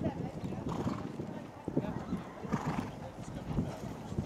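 Hoofbeats of a showjumping horse cantering on a sand arena surface: a run of dull, irregular thuds.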